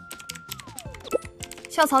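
Fast typing on a computer keyboard: a quick, dense run of key clicks over background music.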